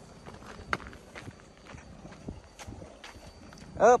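Footsteps crunching on a dry dirt track, irregular soft steps and small knocks with a low rumble beneath. A short exclamation comes right at the end.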